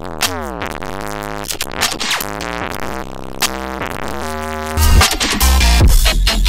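Dubstep track playing back through a mastering chain with Ableton's Saturator (Soft Sine): synth lines that glide and step in pitch over a deep sub-bass, which turns much louder and heavier about five seconds in. The saturation is weighing on the bass, which the producer feels is spoiling the low end.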